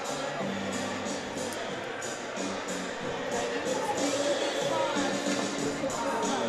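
Music with a steady beat played over an ice-hockey arena's PA system, with held notes under a regular high percussion tick.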